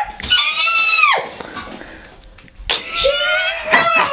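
A person screaming twice, each a high-pitched shriek of about a second. The first is very high and drops off sharply at its end; the second comes about two seconds later and is lower.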